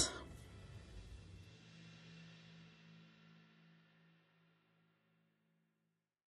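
Near silence: the room sound fades away, leaving a faint low hum that dies out before the end, then total silence.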